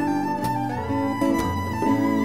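Live band instrumental: a fiddle holds long high notes, stepping up in pitch about a second in, over strummed acoustic guitars, electric guitar and hand drums, with a couple of sharp drum hits.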